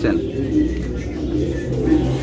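Racing pigeons cooing, low and steady.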